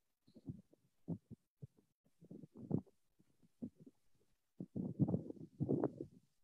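A man's voice breaking up over a failing video-call connection: short, muffled, low-pitched fragments that cut in and out with silent gaps between them, becoming more continuous near the end.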